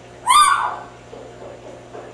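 Timneh African grey parrot giving one short, loud call that rises and then falls in pitch, about a quarter of a second in.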